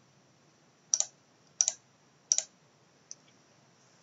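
Computer mouse button clicked three times, about two-thirds of a second apart, then one faint tick.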